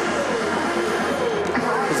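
Music over the stadium PA with indistinct voices, above steady crowd and rink noise.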